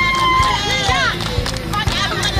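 Women singing over a drum beating about twice a second. One high voice holds a long note that drops and ends about half a second in, and short bending vocal phrases follow.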